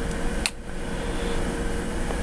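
Steady mechanical room hum, like a fan running, with a faint steady tone in it. A single short click comes about half a second in.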